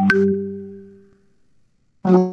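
A single pitched musical note, struck sharply and ringing as it fades away over about a second and a half.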